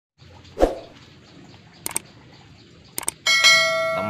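Edited intro sound effects: a short thump about half a second in, two quick double mouse clicks, then a bell chime that rings out near the end. The clicks and chime are the usual sounds of a subscribe-button and notification-bell animation.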